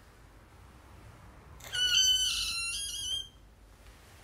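A woman's high-pitched squeal of excitement, about a second and a half long, starting a little before the middle and sinking slightly in pitch before it cuts off.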